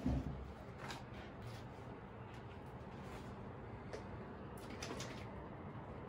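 A dull thump as a painted canvas panel is set upright against a wall, followed by a few faint light clicks and taps of handling over low room noise.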